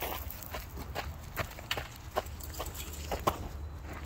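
Footsteps on a paved path, short irregular steps about two or three a second, over a steady low rumble.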